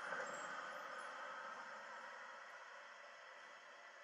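Faint, steady noisy ambience from a TV series trailer's soundtrack, slowly fading away.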